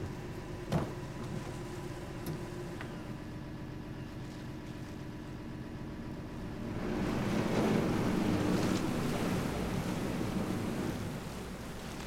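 A small workboat's inboard engine running steadily at the dock. About seven seconds in it throttles up and the propeller churns the water as the boat pulls away, then the sound eases off. A single knock comes just under a second in.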